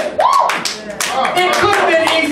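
Several people clapping their hands at an uneven pace, with a raised voice calling out over the claps.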